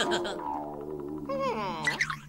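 A cartoon dog whining, a voiced call whose pitch holds and then rises and falls in glides towards the end, over soft background music.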